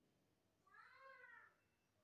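Near silence, broken near the middle by a single faint call of just under a second that rises and then falls in pitch, like an animal's cry.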